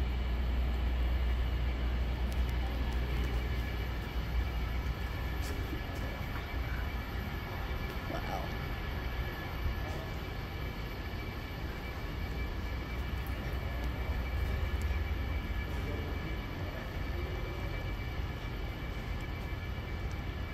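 Steady low rumble and hum, the background noise of a large warehouse, with faint distant voices now and then.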